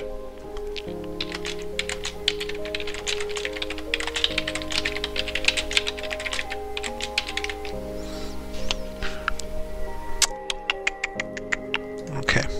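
Typing on a computer keyboard: key clicks in quick irregular runs, with a denser burst near the end. Background music with held chords plays underneath.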